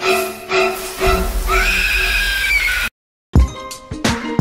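Shower spray hissing, with a man's high, wavering yell under the cold water that cuts off suddenly about three seconds in. Dramatic music plays under the start, and after a brief silence a hip-hop intro beat begins.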